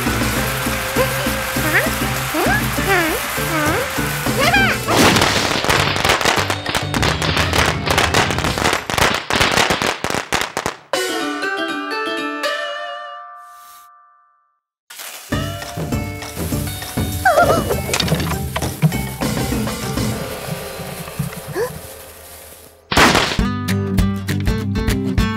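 Cartoon soundtrack: background music with squeaky, wordless character voices, then a dense stretch of loud crackling noise about five seconds in. Near the middle a chiming end-title jingle rings out and fades to a second of silence before the music starts again, switching to a new tune just before the end.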